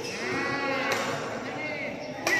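A person's drawn-out vocal call, rising then falling in pitch, with a shorter one a little later. A sharp badminton racket hit on a shuttlecock comes about a second in.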